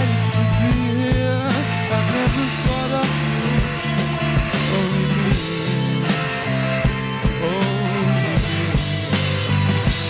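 Live rock band playing loudly: two electric guitars, electric bass and a drum kit, with a steady kick-drum beat under dense, distorted guitar chords.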